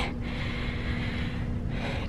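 A person's long, breathy exhale over a steady low hum that fades out just before the end.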